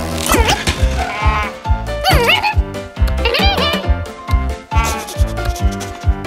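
Cartoon character's wordless vocal sounds, short high calls that waver and slide in pitch, over background music with a steady beat.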